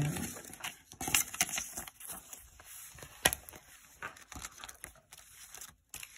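Paper planner sheets rustling and crinkling as they are handled and slid into a ring planner, with scattered small clicks and one sharp click about three seconds in.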